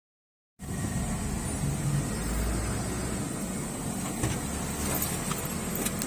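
Silence for the first half second, then a steady low rumble of a car heard from inside its cabin: engine and road noise.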